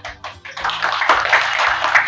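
A small group of people clapping by hand: a few separate claps at first, then steady applause from about half a second in.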